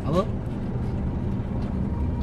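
Steady low rumble of a car's engine and tyres heard from inside the moving car's cabin.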